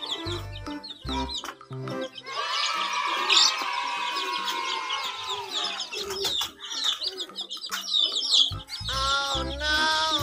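Domestic chicks peeping in rapid, overlapping high chirps over background music with a low beat, which drops out for a few seconds in the middle.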